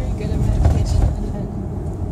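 Steady low rumble of a car's tyres and engine heard from inside the cabin while driving.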